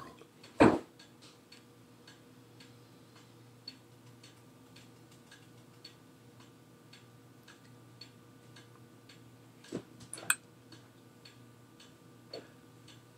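Faint regular ticking, about two ticks a second, over a low steady hum, with two brief louder sounds near the end.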